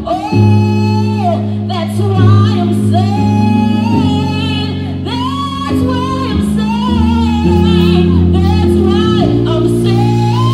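A women's gospel vocal group singing into microphones, with long held notes and vibrato over sustained low instrumental chords.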